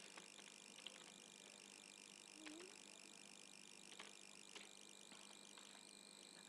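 Near silence: a faint steady hiss with a few soft, scattered clicks from a computer keyboard and mouse.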